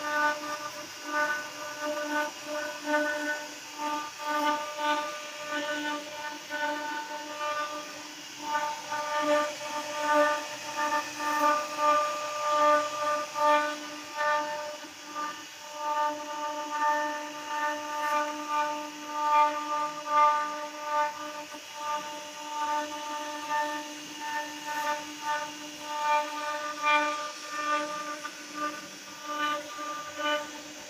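CNC router spindle whining at a steady pitch as its bit carves an ornamental relief into a wooden panel, the whine swelling and dipping irregularly as the cutting load changes.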